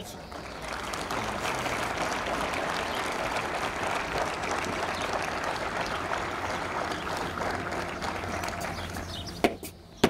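A crowd of soldiers applauding steadily, with a single sharp click just before the end.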